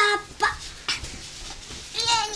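A young girl's short wordless vocal sounds at the start and end, with soft rustles and light knocks in between as she handles a large doll on a padded sofa.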